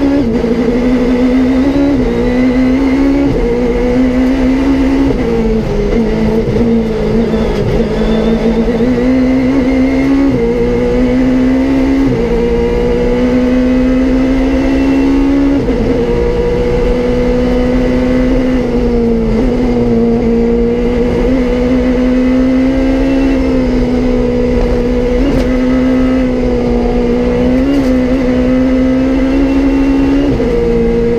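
Peugeot 306 Maxi rally car's four-cylinder engine heard from inside the cabin, running hard at high revs. Its pitch dips and jumps at each gear change, several times over.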